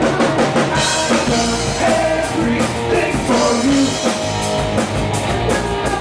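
Live rock band playing, with electric guitar and drum kit, loud and steady.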